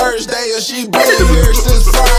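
Hip hop track with rapped vocals over the beat. The bass drops out for about the first second, then the beat comes back in.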